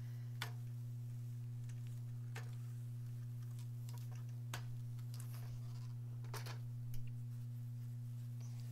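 Steady low electrical hum with a handful of faint clicks and taps as an iron and fabric are handled on a pressing mat, the loudest tap near the end.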